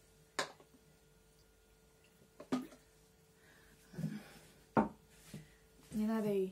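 Objects being handled and set down on a table: three sharp knocks, each on its own, with softer handling and rubbing noise between them, over a faint steady hum.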